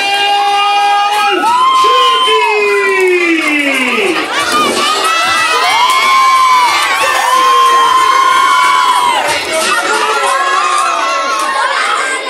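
Wrestling crowd, many of them children, shouting and cheering, with many high-pitched drawn-out yells overlapping one another.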